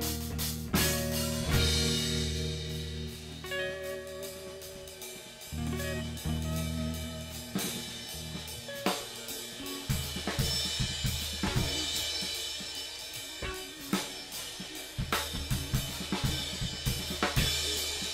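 Live rock jam by a guitar-and-drums duo: an electric guitar plays sustained chords and notes while a Yamaha drum kit keeps the beat with snare, bass drum and cymbal hits, with no singing.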